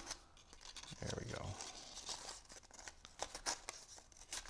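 Cardstock paper petals rustling and crinkling as they are handled and pressed into shape with a pencil: a run of short, faint, scratchy crackles.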